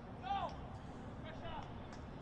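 Faint open-air ground ambience with two brief, distant voice calls, one shortly after the start and one about one and a half seconds in.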